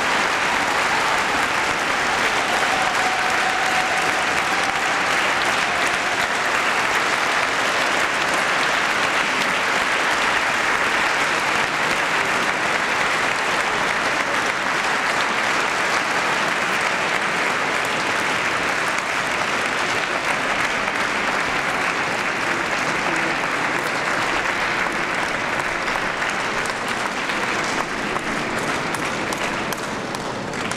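Audience applauding steadily after a concert, the clapping easing slightly near the end.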